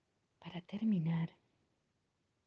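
A short softly spoken phrase of about a second from a meditation guide's voice, with near silence before and after it.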